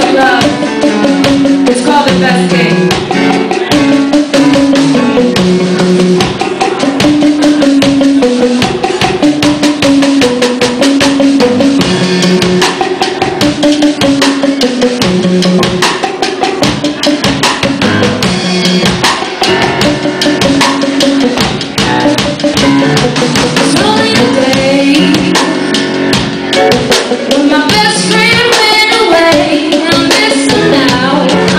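Live band performing a love song: a woman singing lead into a microphone over electric guitar and a drum kit keeping a steady beat.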